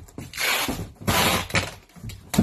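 Cardboard boxes and their packing being handled, with two rasping, tearing bursts about a second apart and low knocks between them.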